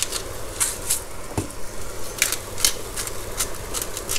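Tuna steaks sizzling in a hot oiled frying pan, with a run of short crunching clicks from a hand salt-and-pepper grinder being twisted over the pan.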